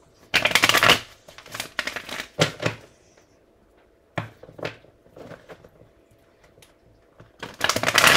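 A deck of tarot cards being shuffled by hand: a loud rush of riffling cards lasting under a second near the start, then a few short, softer card taps and flicks.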